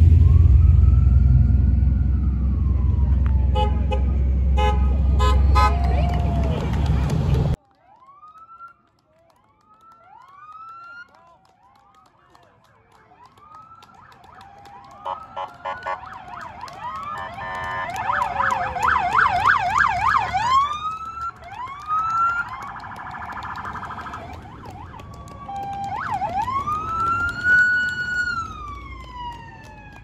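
Police car sirens: short chirps, a rapid warbling yelp partway through, and a long rising and falling wail near the end. Before that, a loud vehicle engine rumble with horn honks cuts off abruptly about seven seconds in.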